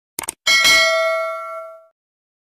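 Subscribe-button sound effect: a quick double click, then a bright notification-bell ding that rings and fades out over about a second and a half.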